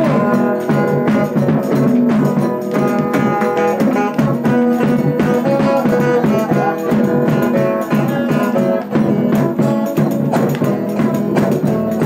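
Music for a roda de São Gonçalo folk dance: instruments holding sustained notes over a steady beat of regular percussive strikes.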